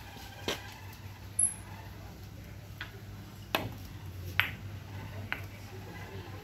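Carom billiard balls on a heated table: the cue tip striking the yellow cue ball and the balls clacking against each other, a handful of sharp clicks with the loudest about three and a half and four and a half seconds in.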